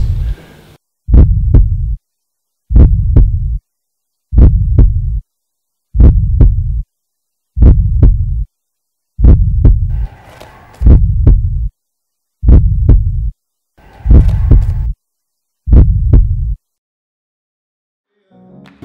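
A low heartbeat-style throb laid in as an edited sound effect, beating ten times at an even pace of about one beat every 1.6 seconds. Each beat is a sharp double knock followed by a low hum under a second long, with dead silence between beats.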